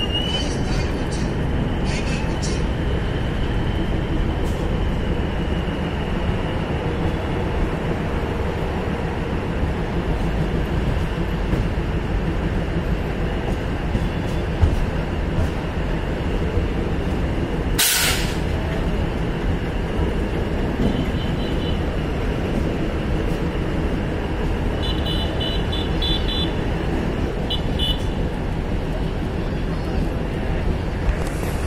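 A DEMU passenger train running along the track, heard from its open doorway: the steady drone of the train and its wheels on the rails. A short, sharp hiss comes a little past the middle.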